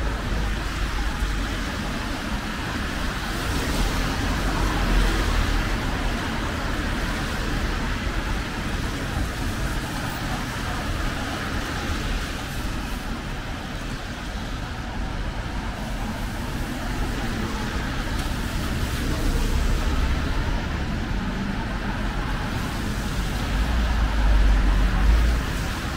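Road traffic passing on a wet city street: car tyres hiss on the wet tarmac over a low rumble. It swells as vehicles go by, louder around four to five seconds in and again near the end.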